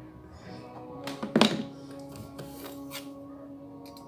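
Background music playing, with one loud thunk about a second and a half in and a few lighter knocks after it, as popsicle sticks glued onto a milk carton are pressed and handled on a wooden table.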